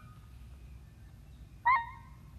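Two short high-pitched squeaks, each rising quickly to a held pitch: one fading out just after the start, then a louder one near the end.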